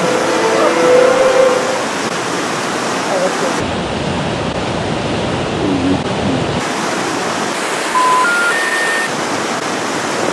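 Steady rush of a waterfall and white-water rapids. Held music notes fade out in the first couple of seconds, and three short beeps, each higher than the last, sound near the end.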